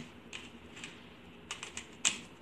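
Plastic 3x3 Rubik's cube being turned by hand, its layers clicking as they twist: a few scattered clicks, then a quick run of about four about a second and a half in.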